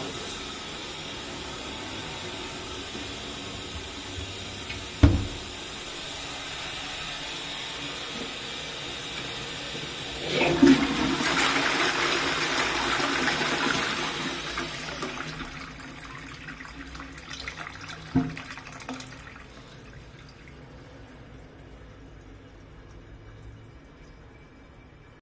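A toilet flushing: a loud rush of water starts about ten seconds in and swirls for about four seconds before fading away. Before it there is a steady hiss and a single thump about five seconds in, and another short knock comes near eighteen seconds.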